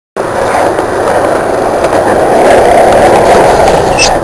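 Skateboard wheels rolling on concrete: a steady rumble that grows a little louder in the second half as the board comes in.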